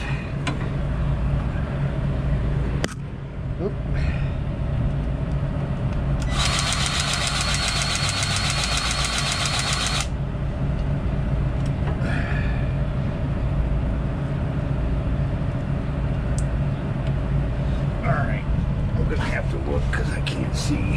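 Cordless grease gun's motor running for about four seconds, a high whine with a fast rapid pulse as it pumps grease into a trailer landing-gear zerk. A steady low engine hum runs underneath.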